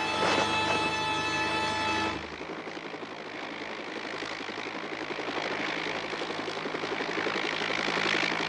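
A held music chord cuts off about two seconds in. It leaves a steady mechanical engine rumble that slowly grows louder.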